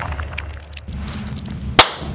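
The tail of a logo sound effect fades away with a few faint ticks, then a single sharp bang comes near the end.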